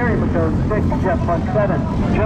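Go-kart engines running on the track, a steady low drone under a voice talking.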